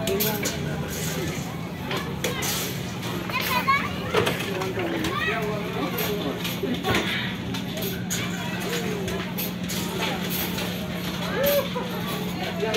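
Busy hubbub of children playing and people talking, with children's voices and shouts overlapping. A steady low hum runs underneath.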